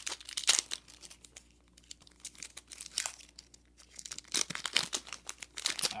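Foil wrapper of a Pokémon trading-card booster pack crinkling and tearing as it is ripped open by hand. The crackling comes in clusters, busiest in the first second and again over the last two seconds, with quieter handling in between.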